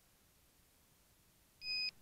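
Near silence, then a single short, high electronic beep near the end that cuts off sharply.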